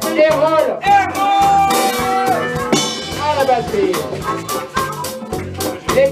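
Live band jamming: a drum kit keeps a steady beat with cymbals under an electric bass, while a lead melody bends in pitch and holds one long note between about one and two seconds in.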